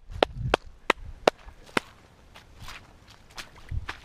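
A run of sharp, irregular clicks or snaps, about three a second, that fades out about two seconds in. A faint low thump follows near the end.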